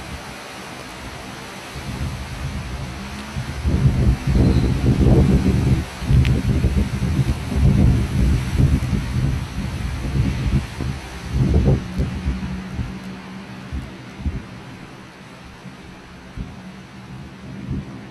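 Torrential rain in a storm, a steady hiss, with loud, irregular low rumbling from about 2 to 12 seconds in.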